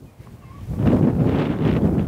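Wind buffeting a clip-on microphone: a loud, irregular low rumble that comes up about three-quarters of a second in and keeps going.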